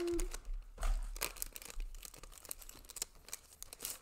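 Paper and plastic packaging rustling, crinkling and tearing in irregular crackles as punch-out sticker sheets are taken out of a stationery kit.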